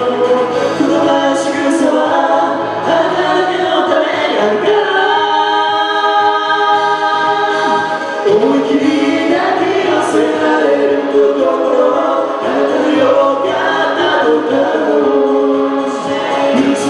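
A man and a woman singing a duet in Japanese into microphones over a karaoke backing track, with a long held note near the middle.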